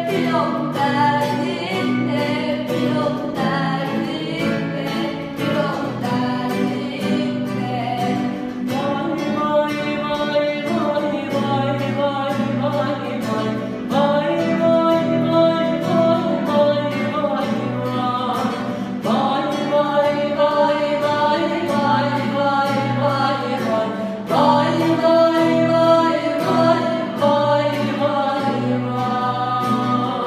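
A steel-string or nylon-string cutaway acoustic guitar strummed in a steady rhythm while a young man and a girl sing a Turkish folk song as a duet.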